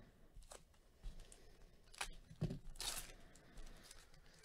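A plastic trading-card pack wrapper being torn open and crinkled by hand: a few short crackles, then a longer rip about three seconds in.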